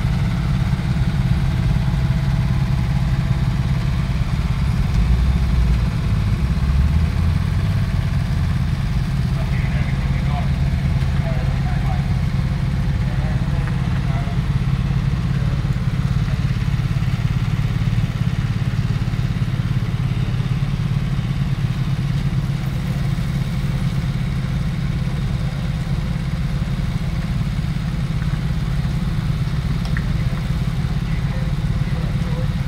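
Heavy-haulage truck diesel engines running in a low, steady drone as a long multi-axle abnormal-load trailer moves past. The engine note rises briefly a few seconds in.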